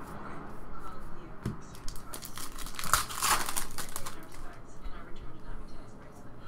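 Trading cards being handled and shuffled by hand, an irregular rustling and crinkling with small clicks, busiest about halfway through.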